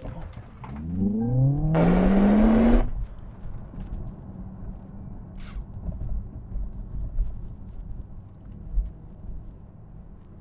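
Smart #3 Brabus dual-motor electric drivetrain in a launch-control start, heard from inside the cabin: a whine rising steadily in pitch over the first three seconds, with a loud rushing burst near its peak, then a low steady rumble of road noise as the car drives on.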